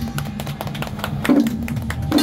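Procession music: drums beating with rapid clicking percussion over a deep bass.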